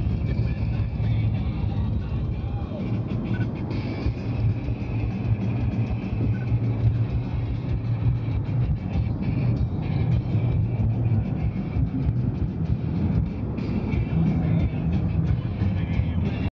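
Steady drone of a car driving at speed, heard from inside the cabin, with music playing along.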